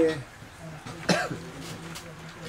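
A single short cough about a second in, over a low steady hum in the room.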